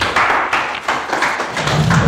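Audience applauding, starting suddenly as a speech ends. A deeper low sound builds near the end.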